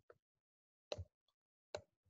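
A few short, faint clicks of a stylus pen tip tapping the writing surface during handwriting. The two clearest come about one second and one and three-quarter seconds in, against near silence.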